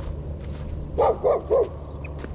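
A dog barks three times in quick succession, about a second in.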